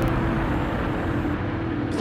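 Virgin Galactic VSS Unity's hybrid rocket motor firing just after release from the carrier aircraft: a steady, even rushing roar.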